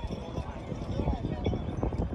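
Voices of people talking in the open, with irregular short knocks of steps on stone paving.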